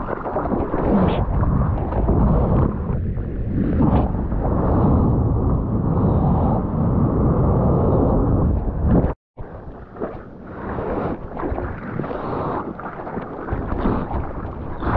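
Seawater rushing and splashing around a surfboard and over a camera held close to the water, with wind buffeting the microphone. The sound cuts out abruptly for a moment about nine seconds in, then returns as choppier splashing.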